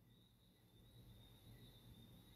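Near silence: faint room tone with a low hum and a thin high whine.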